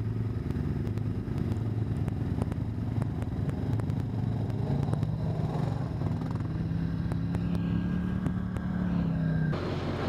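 ATV engine idling, then revving up about four seconds in and holding at higher revs as the quad pulls away along a dirt trail, with scattered light rattles. The sound changes abruptly just before the end.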